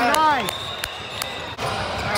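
Basketball game on an indoor hardwood court: a couple of sharp ball bounces and a thin, high sneaker squeak, over the murmur of the gym.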